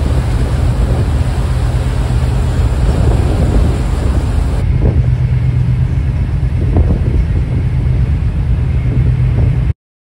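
Fast-craft ferry under way, recorded on deck: a loud, steady low engine drone with the rush of wind and churned wake water. The hiss thins a little at a cut about halfway through.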